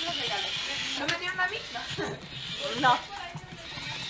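Speech: people's voices in a room, with a wavering, sing-song voice about a second in and a short spoken "No" near the end, over a steady hiss.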